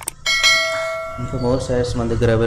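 A mouse click followed by a bright bell ding that rings out and fades over about a second: the notification-bell sound effect of a YouTube subscribe-button animation.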